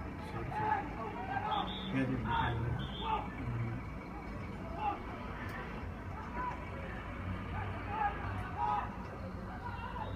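Several people talking indistinctly, most in the first few seconds, over a steady low engine hum.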